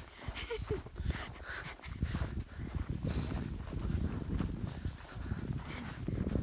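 Footsteps in snow with rustling and bumping of a handheld phone as the person filming walks, in irregular low thumps and scuffs.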